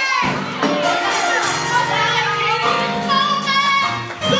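Women's gospel choir singing with instrumental accompaniment, voices wavering and sliding, with crowd voices calling out. From about a second and a half in, low notes are held steady underneath.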